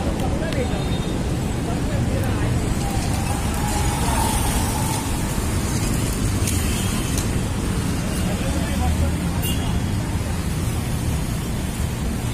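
Steady outdoor rushing noise with a low rumble, with faint voices now and then.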